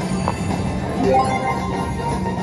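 Slot machine electronic sound effects: jingling melodic tones over a steady hum, with a click about a quarter second in.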